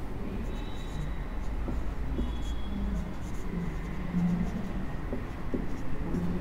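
Marker pen writing on a whiteboard: soft, scratchy strokes with a couple of brief faint squeaks.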